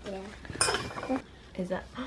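A metal fork clinks once against a plate, with a brief high ringing, about half a second in.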